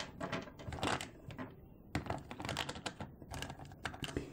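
Irregular light clicks and rattles of small polymer clay charms and a hard plastic compartment box being handled, as charms are sorted and picked out.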